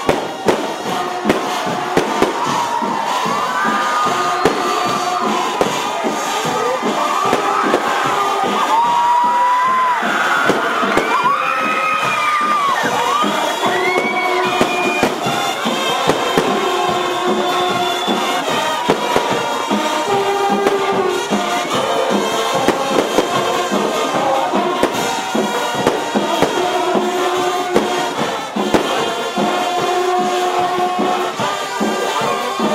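Brazilian fanfarra marching band playing, dense drumming under held brass notes, with a crowd cheering and fireworks crackling. Shrill sliding whistles sound through the first half.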